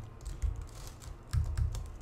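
Computer keyboard being typed on: several separate keystrokes with pauses between them as new lines are entered in a code editor.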